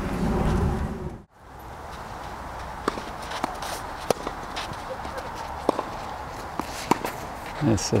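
Tennis rally on a clay court after an abrupt cut about a second in: sharp, irregularly spaced pops of racquet strings hitting the ball and ball bounces over open-air ambience, with a man's voice starting near the end.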